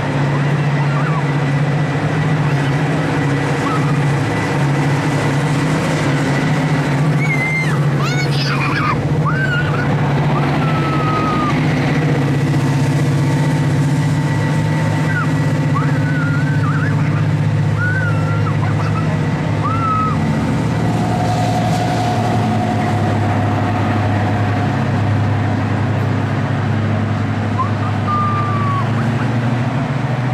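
Class 55 Deltic diesel locomotive, its Napier Deltic opposed-piston two-stroke engines running with a steady deep hum; the note drops a little about two-thirds of the way through.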